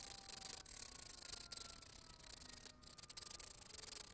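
Faint, steady scraping of a hand scraper along the edge of a violin's ebony fingerboard where it meets the neck, shaving off the excess wood.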